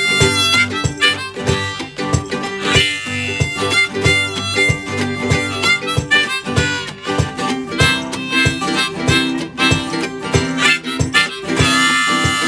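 Harmonica played from a neck rack, carrying the melody over a steadily strummed ukulele and acoustic guitar in an instrumental break of a cheerful sing-along song.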